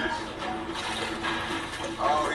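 Water sloshing and splashing in a steady rush, as a flooded car cockpit fills with water.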